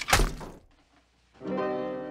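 A heavy car jack striking a person's head: one loud blunt thunk at the start that dies away within half a second. After a moment of near silence, sustained piano music comes in.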